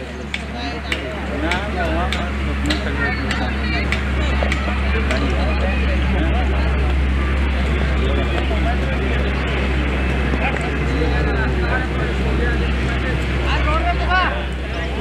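Background chatter of people's voices over a steady low hum.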